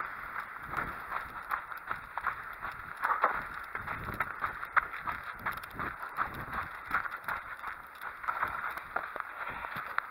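A runner's footsteps on a sandy dirt path, a quick, irregular patter of steps over a steady hiss.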